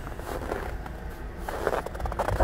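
Footsteps on snow-dusted pavement over a low, uneven rumble.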